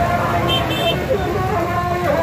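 Many voices of a crowd over motorcycle and auto-rickshaw engines running in slow traffic, with a short high vehicle horn beeping three times about half a second in.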